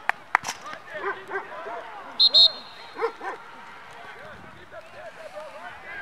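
A referee's whistle blown in two short, sharp blasts about two seconds in, the loudest sound here. Short, repeated yapping calls from a small dog come before and after it over distant voices.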